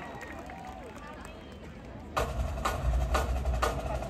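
Amplified live-concert music: after faint crowd voices, a song's percussive beat with heavy bass starts about two seconds in, with hits about twice a second.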